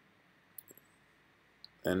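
A few light keyboard key clicks, a pair about half a second in and one more near the end, entering answers at a gdisk prompt, over near-silent room tone.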